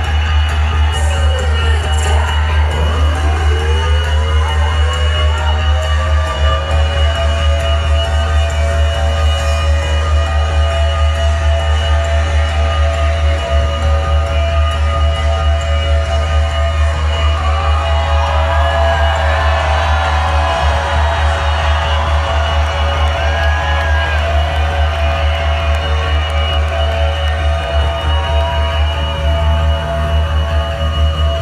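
Loud electronic intro music through a concert PA: a constant heavy bass drone with held synth tones and rising sweeps in the first few seconds. The crowd cheers and whoops over it in the middle part.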